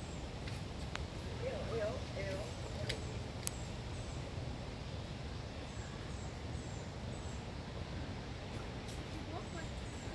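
Faint outdoor background with distant people talking indistinctly, loudest between one and two and a half seconds in, a few high short chirps, and one sharp click about three and a half seconds in.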